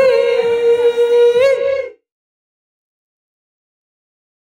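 One high sung or hummed note from a single voice, held steady for about two seconds with a brief wobble in pitch near the end, then cut off abruptly into silence.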